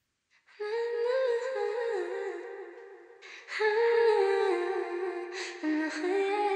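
Female vocal ad-libs playing back: long sung notes that step up and down in pitch, starting about half a second in, with short breaks a little after halfway and near the end.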